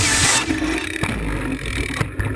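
Helmet-mounted action camera audio of a mountain bike ride: wind rushing over the microphone, loudest in a burst at the start, then a low rumble with scattered rattles from the bike.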